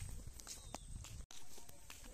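Footsteps of a person walking, heard as a few scattered, irregular clicks over a low rumble, with the sound cutting out for an instant just past halfway.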